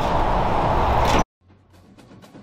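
Steady outdoor traffic noise that cuts off abruptly a little over a second in. It is followed by faint music with light percussive ticks.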